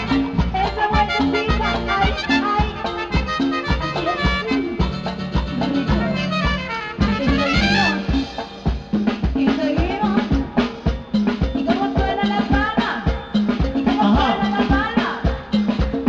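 Live Latin dance orchestra playing with horns, electric bass, congas and drum kit over a steady dance beat. About seven seconds in, a quick run of notes rises sharply in pitch.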